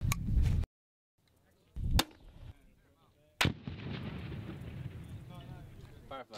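40 mm grenade launcher firing: three loud reports. The first is cut off abruptly after about half a second, the second comes about two seconds in and the third about three and a half seconds in, followed by a steady outdoor hiss.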